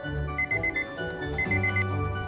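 Digital countdown timer sounding its alarm, two bursts of four quick high beeps about a second apart: the set time is up. Background music plays under it.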